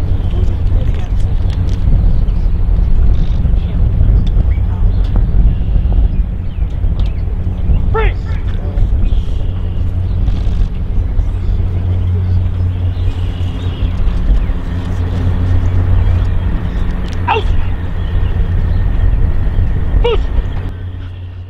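Wind buffeting an outdoor microphone, a loud low rumble that rises and falls throughout. Over it come two short shouted commands to a working dog, about eight seconds in and again near the end.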